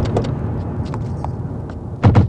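Toyota Corolla sedan sliding over a dirt and gravel track: a steady low engine and tyre sound with scattered small clicks of stones and grit, easing off slightly as the car comes to a stop.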